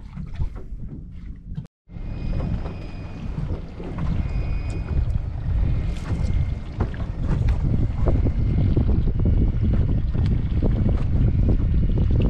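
Wind buffeting the microphone on an open boat at sea, a steady low rumble with a brief break about two seconds in.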